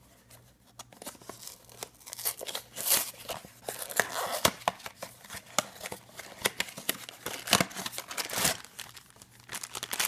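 Small cardboard blind box being torn open by hand: irregular tearing, snapping and crackling of the card as the flap is forced up, then the crinkle of the black plastic bag inside as it is pulled out near the end.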